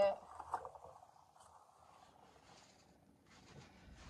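Faint rustling and scraping of fingers working through powdered desiccant as a dried cosmos flower is lifted out. The sound is mostly in the first second, then near quiet, with a few faint soft sounds near the end.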